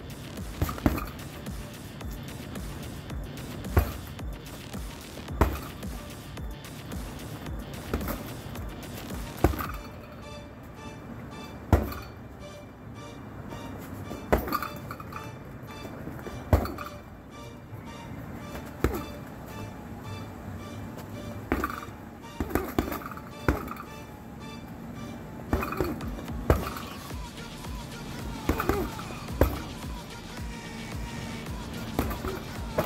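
Punches landing on a hanging heavy bag: sharp, single thuds at irregular intervals, roughly one to two seconds apart, over background music.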